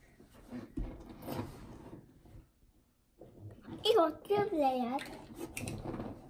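Mostly quiet room tone with a few faint small knocks, and a child's voice speaking softly for about a second near the middle.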